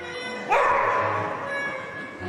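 A single loud dog bark about half a second in, ringing out in the hall and fading over about a second, over orchestral routine music.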